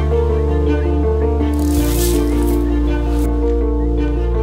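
Background music of sustained chords over a low bass, which shifts a little under two seconds in, with a brief hissing swell near the middle.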